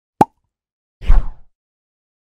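Logo-animation sound effects: a short sharp pop about a fifth of a second in, then about a second in a louder deep hit with a falling swoosh that dies away within half a second.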